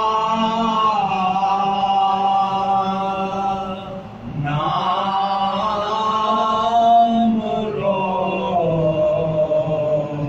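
Marsiya khwani: several men singing an Urdu elegy together in unison, without instruments, in long, slowly bending held notes. The singing breaks off briefly about four seconds in, then resumes.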